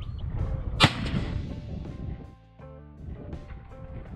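A single hunting-rifle shot about a second in, a sharp crack followed by a short decay, fired while sighting in a scoped rifle.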